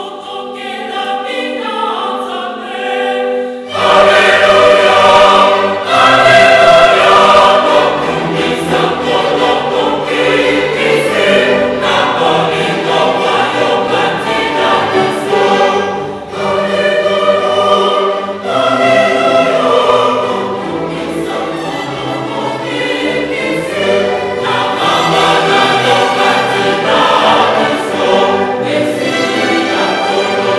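A choir singing with a string orchestra. About four seconds in, the music turns abruptly louder and fuller.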